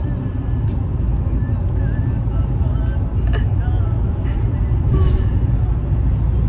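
Steady low road rumble inside a moving car's cabin, from tyres and engine at highway speed.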